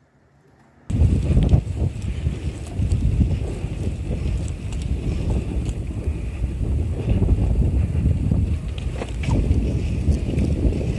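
Wind buffeting the microphone of a camera on a moving bicycle: a loud, steady low rumble that starts abruptly about a second in, after near silence.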